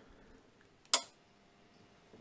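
APC Easy UPS BV 1000VA clicking once, sharply, about a second in as it powers on; otherwise quiet.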